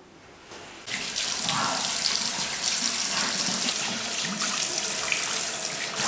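Water running from a push-button washbasin tap into a sink. It starts about a second in and runs steadily.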